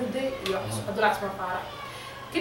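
A woman speaking in short, expressive phrases with a pitch that slides up and down.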